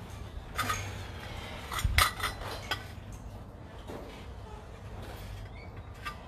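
A few scattered clinks and knocks, the heaviest with a dull thud about two seconds in, over a faint steady low hum.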